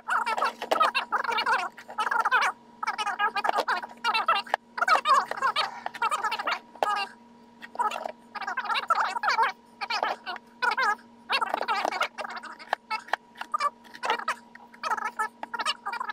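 A man's voice played fast-forwarded: rapid, high-pitched, chattering speech with no words that can be made out, over a steady low hum.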